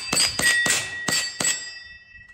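About six sharp hits in quick, uneven succession, each leaving a ringing metallic ding: gel balls from an electric gel blaster striking hanging steel targets. The ringing fades over the last second.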